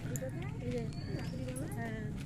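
A person's voice speaking indistinctly, with a faint short high rising note about a second in.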